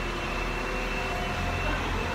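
Steady mechanical hum with a thin, steady high whine over it and a few fainter steady tones below.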